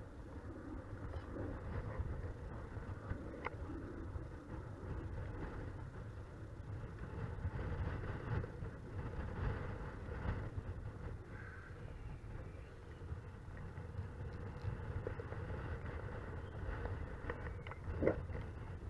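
Steady wind buffeting the camera microphone: a low rumble with a thinner hiss above it, rising and falling a little in strength.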